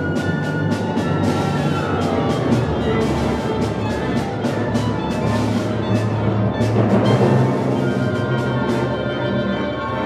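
Contemporary chamber ensemble playing live: strings, winds and percussion, with a fast run of repeated percussion strikes, about four a second, over sustained low notes. The strikes die away near the end.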